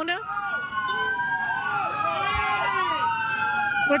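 Police car sirens wailing as the cars approach. Several sirens sound at once, their pitches sliding up and down and crossing each other.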